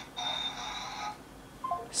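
Thin sounds of fighting coming over a phone's loudspeaker during a call: a high ringing tone over a hiss for about a second, then a short tone that steps down in pitch near the end.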